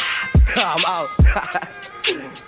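A man rapping over a UK drill beat, with two deep bass hits and quick hi-hats.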